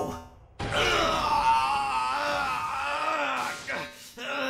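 An animated robot character's long, drawn-out cry of anguish, starting abruptly about half a second in and held for nearly three seconds, over background music.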